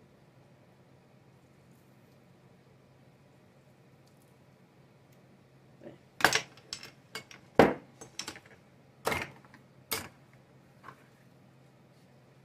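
Kitchen utensils clacking against a plastic cutting board as they are picked up and set down: quiet room tone with a low hum for about six seconds, then a quick run of sharp clacks over about four seconds, the first two loudest.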